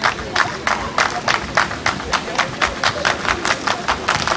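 Crowd of spectators clapping together in a steady rhythm, about four to five claps a second, during the serve at a beach volleyball match.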